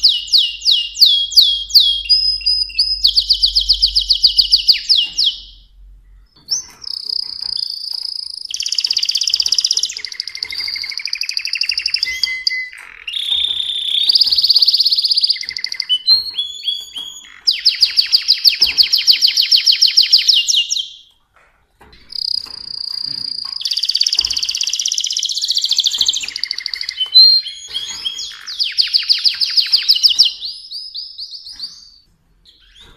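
Mosaic canary singing a long song: fast rattling trills alternate with held whistled notes and pitch glides, broken by two short pauses.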